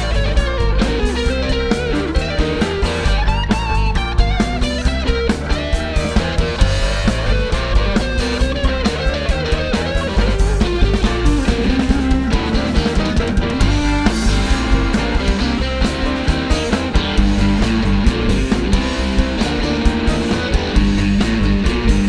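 Live blues-rock band playing an instrumental section: electric guitar lines with bends over a steady drum kit beat, bass and keyboard.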